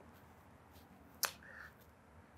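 Mostly quiet room tone, broken by a single sharp click a little over a second in, followed by a brief faint hiss.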